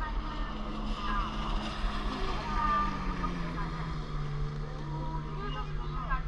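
Motorboat engine running with a steady hum whose pitch drops noticeably about halfway through, as the boat runs across the bay.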